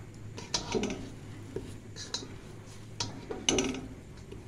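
A cooking utensil knocking and clinking against the pot while ginger-garlic paste fries: about half a dozen short, scattered taps, the loudest near the end, over a low steady hum.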